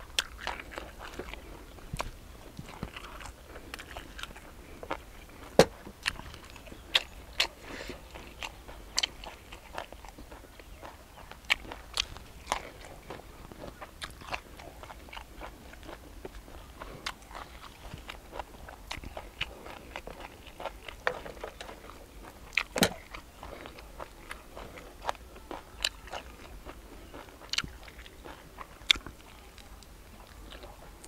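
A person chewing and biting into grilled field rat eaten by hand, with irregular sharp crunches, a few much louder than the rest.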